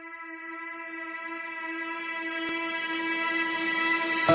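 A single held electronic note with a full stack of overtones, swelling steadily louder: a drone rising into the opening music.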